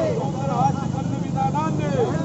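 Men's voices shouting protest slogans, over a steady low background rumble.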